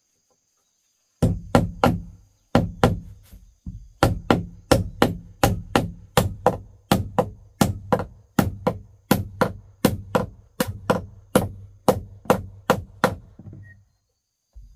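A hand hammer striking the wooden floor planks in a steady run of blows, about three a second, each with a low hollow thud from the boards. The blows start about a second in and stop just before the end.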